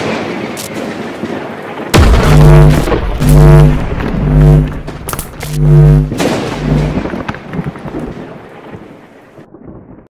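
Intro sound effects of a thunderstorm: a thunderclap with rain, then a loud low rumble with about five pulsing hums as lightning crackles, fading out near the end.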